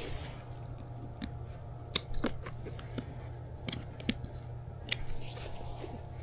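The plastic buckles on a folded fabric solar blanket being undone, giving a handful of sharp separate clicks amid fabric handling, over a steady low hum.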